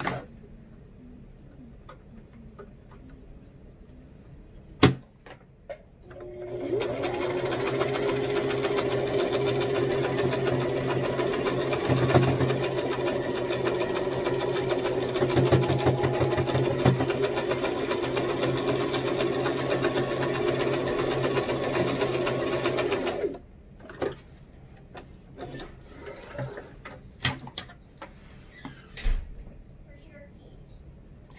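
Electric sewing machine stitching a seam around a fabric mask: the motor picks up speed over about a second, runs steadily for roughly seventeen seconds, then stops abruptly. A sharp click comes shortly before it starts, and light handling clicks follow after it stops.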